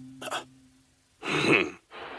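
A voice gives a short rough cough, like a throat-clearing, about a second in, with a brief softer sound just before it. It comes as a held low note of background music fades out.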